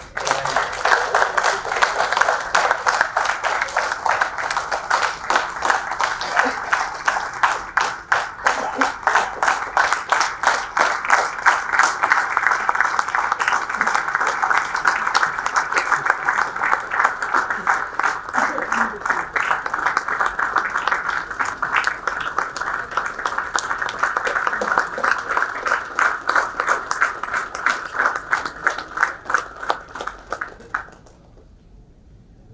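Audience applauding: the clapping starts all at once and keeps up steadily for about half a minute.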